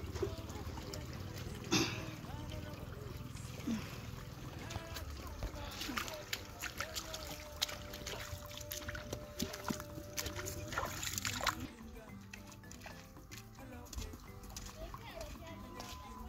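Footsteps splashing and water sloshing as a person wades through a shallow muddy stream carrying a filled jerrycan, with scattered soft knocks and faint voices in the background.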